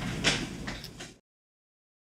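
Room noise with two brief knocks over the first second. The audio then cuts off abruptly to dead silence as the recording ends.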